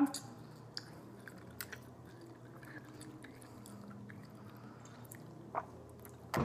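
Quiet chewing of jelly beans, with a few faint, scattered mouth clicks.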